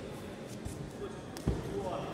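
Dull thuds of judoka bodies hitting tatami mats as they grapple on the ground, the loudest about one and a half seconds in, with voices echoing in a large hall.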